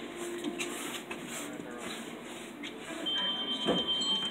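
Electronic sounds of a skill game machine over room noise. About three seconds in a steady high electronic tone starts and holds, as the machine comes up with a win, with a short thump just before the end.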